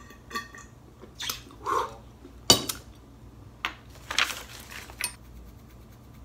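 Drinking from a stainless steel water bottle: a few swallows among knocks and clinks of the metal bottle and its screw cap. The loudest is a sharp knock about two and a half seconds in.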